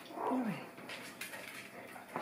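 A three-week-old puppy gives one short whining cry that falls steeply in pitch, about half a second long, right at the start.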